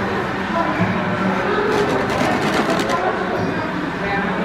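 Background chatter of shoppers' voices in an indoor shop, steady throughout, with a brief run of light clicks about two seconds in.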